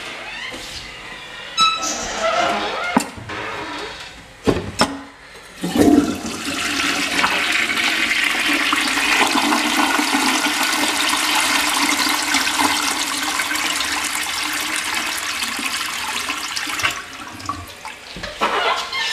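Toilet flushing: a few sharp knocks, then a sudden rush of water about six seconds in that runs steadily for about ten seconds before tapering off.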